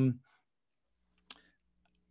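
A single short, sharp click about a second in, after a brief spoken word, with a faint low hum behind it.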